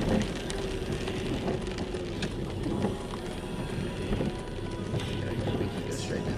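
Car cabin noise while driving in the rain: a steady engine and tyre hum with rain spattering on the windshield, under faint music.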